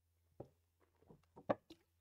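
A man drinking from a glass: a few faint, short gulping and clicking sounds, the loudest about one and a half seconds in, over a low steady hum.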